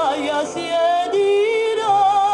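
A woman singing with a wide, fast vibrato, played from a vinyl record. Her line falls just after the start, then she holds a long wavering note from near the end.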